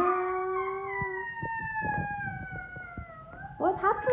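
A voice singing a long, drawn-out fanfare note at the end of a "ta-da", held for about three seconds and slowly falling in pitch. A shorter sliding vocal sound follows near the end.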